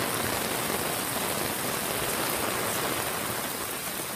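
Heavy rain falling steadily, splashing onto a parking lot covered in standing water.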